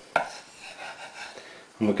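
A table knife knocks once sharply against a wooden worktop, followed by faint scraping and handling as it slides under a rolled pastry lid to lift it.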